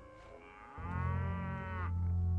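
A single drawn-out animal call lasting about a second, starting just under a second in, over a low steady hum.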